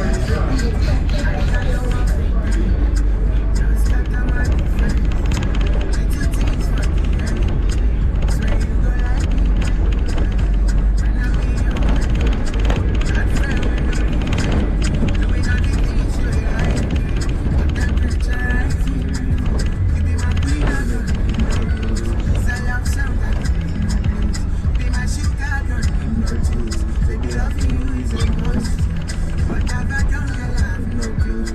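Music with a voice in it, over the steady low rumble of a car driving on a dirt road, heard from inside the car.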